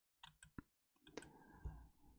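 Near silence broken by three faint clicks about half a second apart, a computer mouse being clicked to advance presentation slides.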